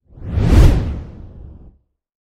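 A single deep whoosh sound effect for a title card: it swells up quickly, peaks about half a second in, and fades away over the next second.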